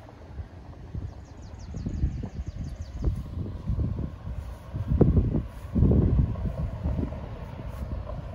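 Wind buffeting the phone's microphone in irregular gusts of low rumble, strongest about five to six seconds in.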